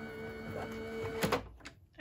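Sizzix Big Shot Switch Plus electric die-cutting machine's motor running with a steady hum, the thick Bigz die sandwich not feeding through. The hum stops suddenly about a second and a half in, with a few clicks of the plastic cutting plates being pulled from the slot.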